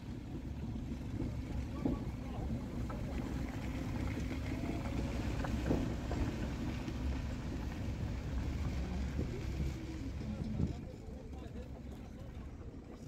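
Car driving slowly on a dirt track, heard from inside the cabin: a steady low rumble of engine and tyres with occasional small knocks, easing off near the end.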